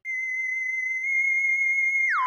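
A steady, high electronic tone, one held pitch with faint higher overtones, that starts abruptly and steps up very slightly about a second in.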